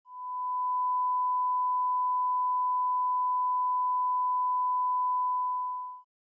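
Steady 1 kHz line-up test tone, a single unwavering pure pitch. It fades in within the first half-second and cuts off suddenly at the end.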